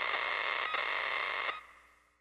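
A steady hiss like radio static, with a faint click about two-thirds of a second in; it drops away about a second and a half in and fades out.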